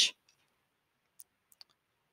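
Near silence with three faint, brief clicks, the first about a second in and the other two close together soon after.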